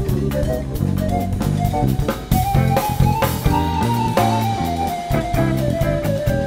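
Live jazz quartet of electric guitar, keyboard, electric bass and drum kit playing a jazz standard in a pseudo-bulerías flamenco feel: a running melody over bass and drums, with a wash of cymbals about two and a half seconds in.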